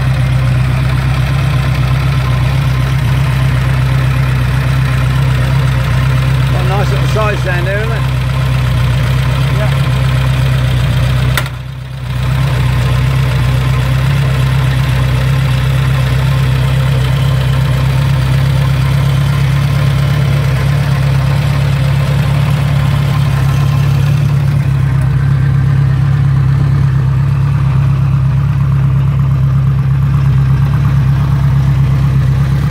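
1955 Ariel Square Four MkII 1000cc four-cylinder engine idling steadily, warm after a ride. The sound drops out briefly about twelve seconds in.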